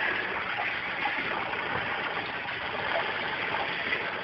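A steady, even rushing noise with no distinct events or rhythm.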